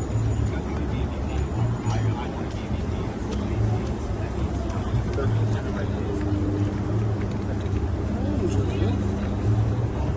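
Steady city street noise: a low rumble of traffic, with voices in the background.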